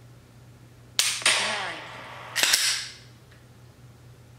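Simulated gunshot sound effect from a laser dry-fire training setup, sounding twice about a second and a half apart, each shot with a long fading tail.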